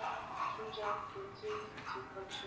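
A high-pitched voice in short, broken sounds that change pitch.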